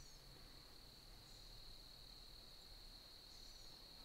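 Near silence, with only a faint, steady, high-pitched insect trill in the woods.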